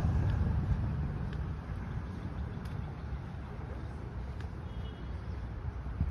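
Road traffic on a wide multi-lane street: a passing vehicle fades away over the first couple of seconds, leaving a steady low rumble.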